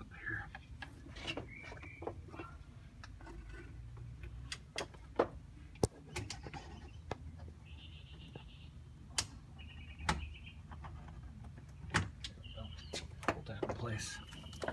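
Knocks, clicks and clunks of a golf cart's seat cover being lifted and propped open on a wooden yardstick, with a few sharp knocks standing out over a low steady rumble.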